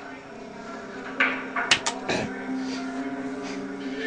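Television soundtrack of a drama scene, played through the set's speaker into the room: a low steady hum with a few sharp clicks between about one and two seconds in.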